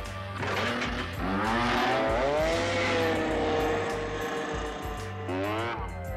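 Dirt bike engine revving and accelerating: its pitch climbs in the first second or two, holds and sags slightly through the middle, then climbs again near the end. Background music plays underneath.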